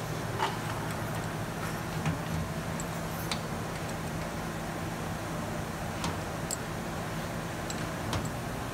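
A handful of light, irregular metallic clicks from a wrench working the take-up bolts and threaded rod on the conveyor's steel frame, as the take-up bearing is loosened to slacken the elevator chain. A steady low hum runs underneath.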